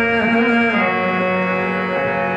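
Harmonium holding sustained reed chords while the tabla pauses, the bass note stepping down to a lower pitch a little under a second in.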